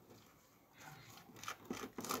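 A plastic spoon spreading a white spread across dry toast: faint, scratchy scraping strokes that begin about a second in.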